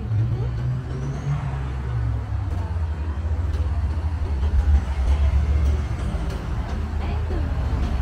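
Low, steady engine rumble of road traffic on the street alongside, with passersby talking faintly.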